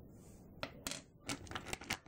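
Small polymer clay charms clicking and clattering against each other and a clear plastic compartment box as they are handled: a run of about half a dozen light, quick clicks in the second half.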